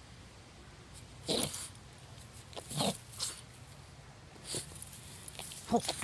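Boston Terrier making a few short, separate vocal sounds while nosing at a small snapping turtle: one about a second in, a pair near three seconds, a fainter one near four and a half seconds, and more starting just before the end.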